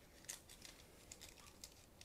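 Faint crinkling of a thin plastic bag being opened, with a few soft scattered ticks.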